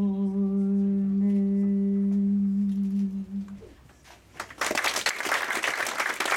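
The last note of a lullaby, sung and held steady by women's voices for about three and a half seconds, then fading out. After a brief hush, audience applause breaks out about four and a half seconds in.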